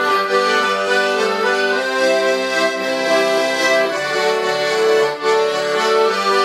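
A diatonic button accordion (melodeon) and a piano accordion playing a country tune together as a duet, with steady held chords under a moving melody.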